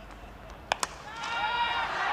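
A cricket bat strikes the ball with a sharp crack about two-thirds of a second in, and then the crowd noise swells with shouts as the ball flies high towards the deep.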